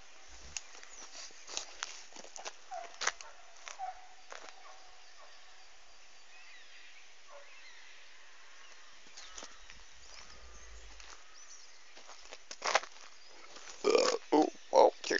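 Quiet outdoor background with scattered light clicks and rustles from a handheld phone being handled while walking, and a brief low rumble about ten seconds in.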